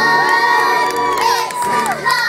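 A group of young girls shouting together, many voices overlapping, with one long held cry that slides down in pitch near the end.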